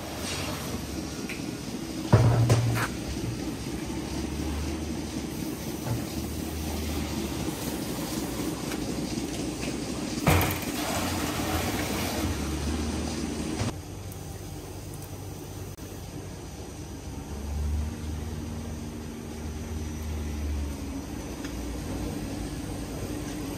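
Milk poured from plastic cans into a stainless-steel tank over a steady machinery hum, with two loud knocks of a can against the tank, about two seconds in and again about ten seconds in. A little past halfway the hum stops abruptly and a quieter background takes over.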